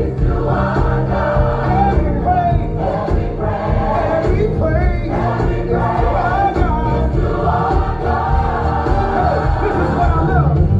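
Gospel music: a choir of voices singing over sustained bass and chord accompaniment, continuous and steady in level.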